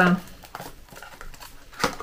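A small cardboard serum box handled and turned over in the hands: faint crinkling and rubbing of the packaging, with one sharper click near the end.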